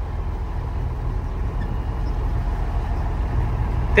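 Heavy truck's diesel engine running steadily under way, a low even drone heard from inside the cab.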